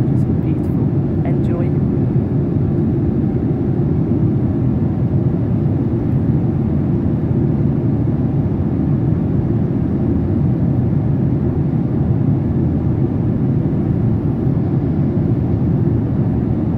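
Airliner cabin noise at cruising altitude, heard inside the cabin: the steady, even low drone of the jet engines and the airflow past the fuselage, unchanging throughout.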